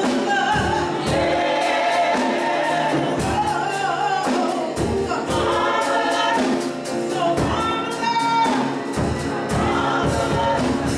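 Gospel choir of men and women singing together, accompanied by piano and a drum kit keeping a steady beat.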